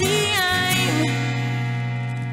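Acoustic band music: a sung note trails off within the first second, then acoustic guitar chords ring on steadily.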